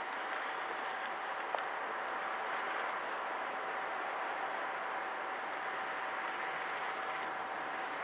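Tyne and Wear Metrocar electric train approaching in the distance: a steady hiss with a faint, even hum running through it. There is a single small click about one and a half seconds in.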